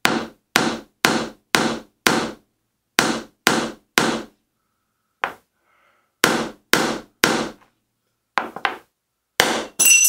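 A hammer striking a wooden block held against a scored quarter-inch mirror: about fifteen sharp knocks, roughly two a second, with a pause about halfway through. The tapping is meant to run a break along the score line, and the last strike ends in a ringing clink.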